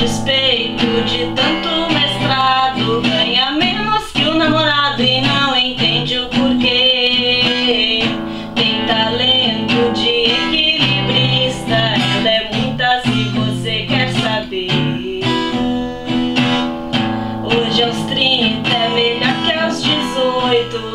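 Acoustic guitar strummed in a steady rhythm, with a woman's singing voice over it through much of the passage.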